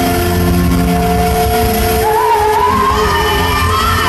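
Live rock band with a male lead singer, heard from the audience: sustained notes at first, then the singer's voice enters about halfway, wavering up and down over the band.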